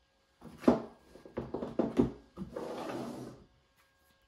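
Handling noise of a pistol being lifted out of the foam insert of a hard plastic ammo-crate case. There is a sharp plastic knock about two-thirds of a second in, a few lighter clicks, then about a second of scraping as the crate is slid across the table.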